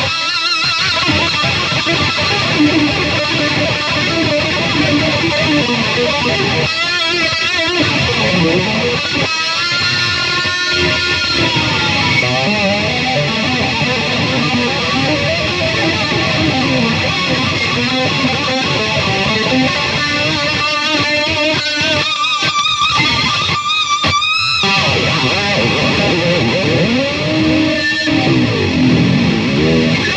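Electric guitar played solo in a loose improvised jam, with notes that waver and bend in pitch at several points.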